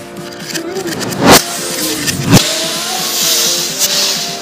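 Firecrackers bursting with two loud sharp bangs, about a second in and again just after two seconds, over background music, with a hiss in the last second.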